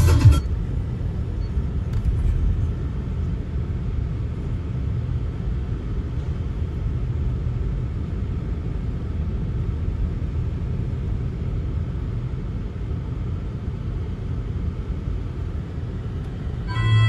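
Steady low rumble of a car driving slowly along a town street, heard from inside the car: engine and tyre noise.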